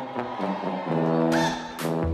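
Electronic dance music played over a PA, a brassy lead holding a few sustained notes, then a rising sweep building up in the last half second before the beat drops.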